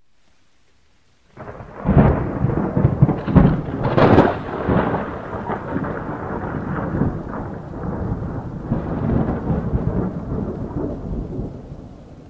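Thunderstorm sound effect: a loud crackling rumble of thunder over a steady rain-like hiss. It starts suddenly about a second and a half in, is loudest over the next few seconds, then carries on more evenly.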